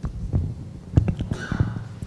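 Handling noise from a live handheld microphone as it is passed from one hand to another: several dull thumps and knocks over a steady low hum, with a short rustle about one and a half seconds in.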